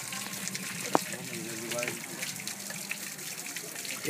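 Water running and splashing through a hand-built bamboo water pump, a steady noise with one sharp click about a second in.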